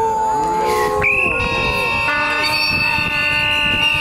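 Crowd noisemakers, several horns and whistles, blown in long steady tones. A shrill high one starts about a second in and holds on, over booing and shouting voices: a crowd voicing disapproval.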